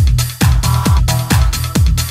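Techno from a DJ mix: a four-on-the-floor kick drum, a little over two beats a second, over a steady bass line and hi-hats. A short run of synth stabs comes in about halfway through.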